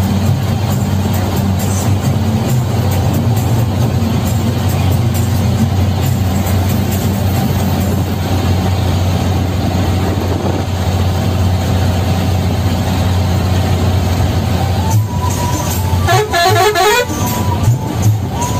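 Diesel bus engine droning steadily at cruising speed, heard from the driver's cab. About three seconds before the end the horn sounds: a held tone, then a fast warbling run of several notes, typical of a musical multi-tone bus horn.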